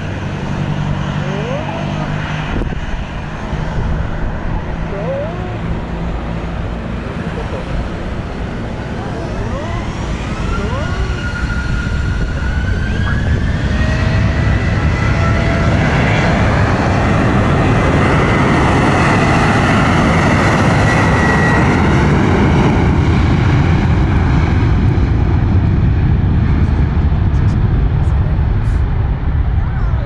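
Jet airliner's engines spooling up in a rising whine that levels off into a high steady whine. Loud, steady jet engine noise builds under it as the plane accelerates along the runway on its takeoff run.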